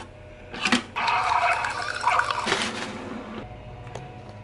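A sharp click, then about two and a half seconds of liquid hiss and splashing from a single-serve pod coffee maker brewing.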